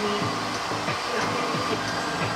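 Steady rushing noise of a blower, like a hair dryer running, with faint music underneath.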